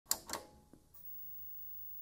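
Two sharp clicks in quick succession with a short ring, then a fainter click, then low hiss.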